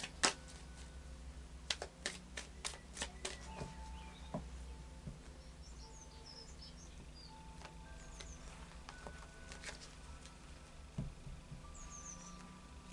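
Tarot deck being shuffled by hand: a quick run of soft card clicks through the first three seconds or so, then only occasional clicks.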